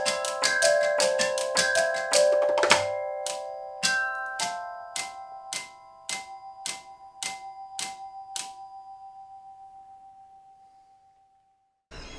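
Solenoid taps from Dr. Squiggles rhythmic tapping robots. Some taps strike tuned tubes that ring with clear pitched notes. A quick, busy rhythm for about the first three seconds gives way to evenly spaced single taps a little under two a second; these stop about 8.5 s in, and the last note rings on and fades away.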